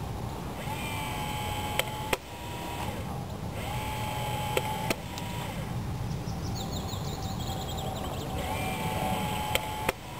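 An RC airsoft battle tank's gun cycling three times as it fires 6 mm paint rounds. Each time a short electric whine lasting about a second ends in two sharp clicks a third of a second apart.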